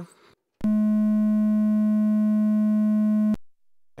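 Behringer 2600 synthesizer's VCO2 playing a triangle wave: one steady tone of unchanging pitch, a little above 200 Hz, that starts just after half a second in and cuts off sharply after nearly three seconds.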